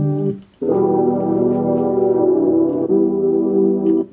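A melodic sample in E minor at 80 BPM being auditioned for a beat. It plays a short chord, breaks off briefly, then plays a long held chord that moves to a new chord about three seconds in.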